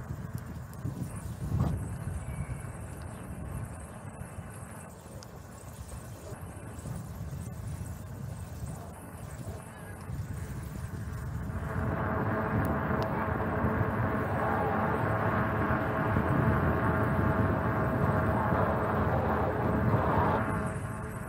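Riding noise from a bicycle on city asphalt: rumble from the tyres and wind on the microphone. About twelve seconds in, a louder steady buzz made of several pitched tones joins it and keeps going.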